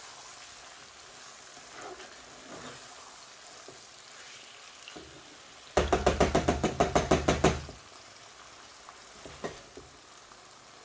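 Masala sizzling gently in a frying pan while a spatula stirs meatballs through it, with soft scrapes. A little over halfway in comes a quick run of about a dozen loud knocks of the spatula against the pan, over in under two seconds.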